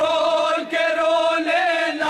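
Two men reciting a Shia noha (lament for the dead) together in a chanting style, holding long sung notes that waver slightly.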